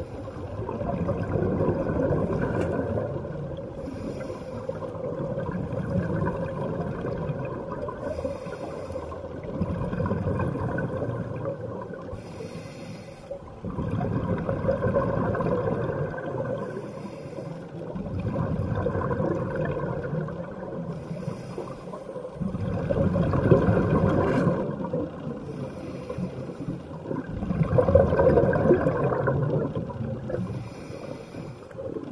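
Scuba diver breathing through a regulator underwater: a short hiss on each inhale, then a longer, louder rush of exhaled bubbles, about six breaths repeating every four to five seconds.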